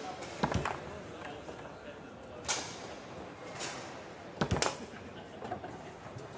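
Sharp knocks of foosball play, the ball struck by the rod men and clacking against the table, four times with the loudest a double knock near the end. Under them runs a steady murmur of voices in a large, echoing hall.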